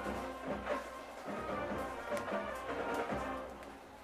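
Brass band music with drums, heard faintly.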